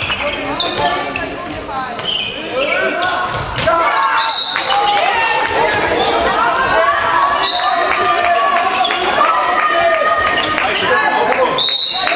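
A handball bouncing on a sports-hall floor among many shouting, calling voices that echo in the hall, growing louder about four seconds in.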